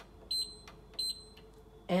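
Indesit dishwasher control panel beeping twice, a short high beep with each press of the program button as it steps through the wash programs.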